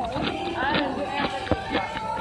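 Voices talking, with a few light clicks and one sharp click about one and a half seconds in.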